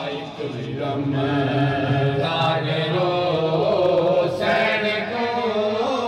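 A noha, a Shia mourning elegy, chanted by male voices in long, held, wavering lines.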